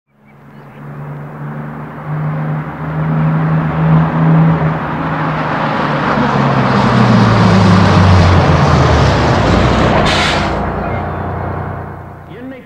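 A bus engine grows louder as the bus approaches, its pitch falling as it slows. There is a short hiss of air brakes about ten seconds in, and then the engine fades.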